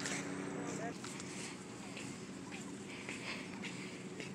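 Indistinct talking over a steady low hum in the first second, then footsteps on the concrete pier at about two a second over open-air background noise.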